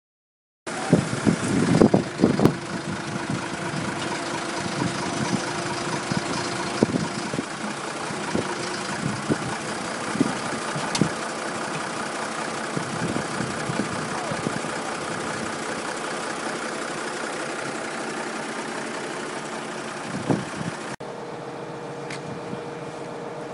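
Wheel loader's diesel engine running steadily as the machine moves on the verge, starting a moment in, with a few loud knocks in the first couple of seconds.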